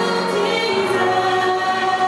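A small worship choir singing together, holding long notes.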